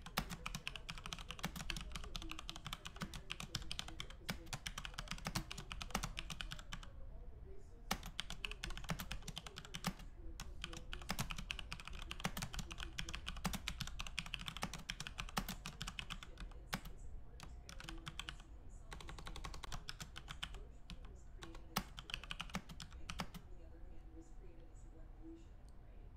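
Rapid typing on a computer keyboard: a fast, continuous patter of keystrokes with a couple of short pauses about a third of the way in.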